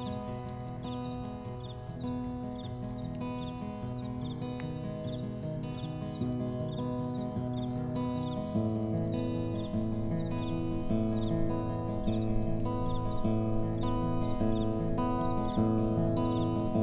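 Acoustic guitar playing a slow instrumental introduction, sustained chords in a steady rhythm that grow fuller and louder about halfway through. A faint high chirp repeats regularly in the background.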